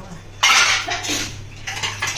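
Kitchen noise at a gas stove: a sudden noisy burst about half a second in that fades away over about a second. Under it runs a steady low hum from the wall exhaust fan, switched on against the cooking fumes.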